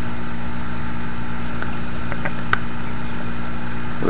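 Steady low mechanical hum, with a few faint ticks as trading cards are handled.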